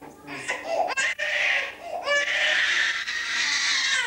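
A baby crying hard, the cries breathy and strained, in short bursts that run together.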